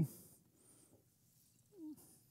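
Mostly near silence while a man drinks from a plastic water bottle; near the end, a brief low voiced sound from his throat, falling in pitch, as he finishes drinking.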